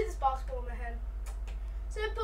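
Speech: a boy's voice saying a few words in the first second, over a steady low hum.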